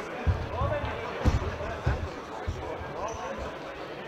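Futsal ball kicked and bouncing on a sports-hall floor, about four dull thuds in the first two and a half seconds, in a reverberant hall with players' voices calling.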